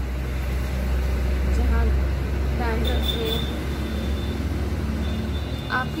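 Low rumble of a passing motor vehicle, steady until about five seconds in, then dropping away.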